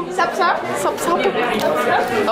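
Speech only: several people talking over one another, with the chatter of a busy hall behind.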